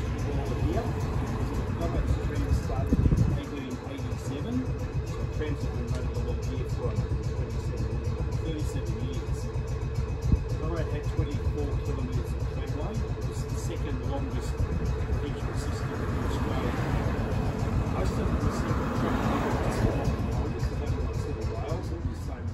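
Steady low rumble and hum aboard a stopped W-class tram, with faint voices in the background and a louder low thump about three seconds in. A car passes on the road outside near the end, its tyre noise swelling and fading.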